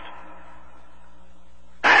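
Quiet, steady hum and hiss of background noise during a pause in a man's speech; his voice comes back near the end.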